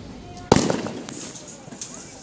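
A single loud, sharp explosive bang about half a second in, ringing away over the next half second.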